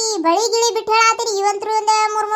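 A high-pitched, child-like cartoon character's voice in a sing-song delivery, held on nearly one pitch and broken into short syllables.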